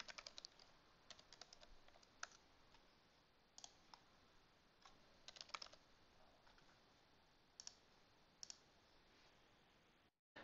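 Faint computer keyboard keystrokes and mouse clicks, scattered singly and in short clusters, over near silence.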